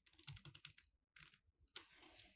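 Faint computer keyboard key presses: a few quick taps in two short runs, then one more near the end.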